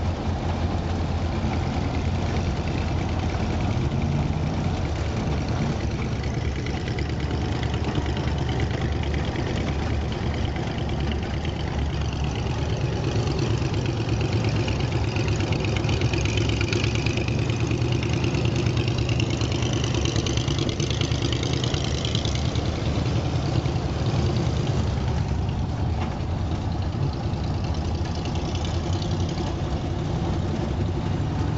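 Vintage hot rod's engine running steadily while driving at speed across sand, heard from on board under a constant rush of wind and tyre noise. The engine note climbs a few seconds in, and a higher whine swells in the middle and then fades.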